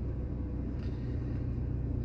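A steady low rumble under faint hiss, with no distinct event standing out.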